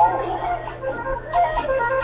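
Short instrumental passage of a recorded children's song, a melodic phrase played between sung lines with no voice, over a steady low hum.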